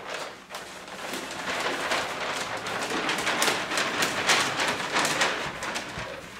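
A large paper wall map rustling and crackling as it is handled and rolled up, loudest in the middle.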